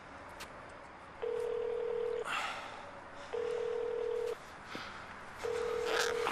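Ringback tone from a mobile phone: a steady beep sounding three times, each about a second long and about two seconds apart, as an outgoing call rings unanswered at the other end.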